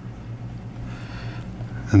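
Quiet room with a steady low hum and a faint, soft hiss about halfway through.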